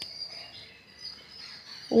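Quiet pause with faint, steady, high-pitched chirring in the background, most likely insects.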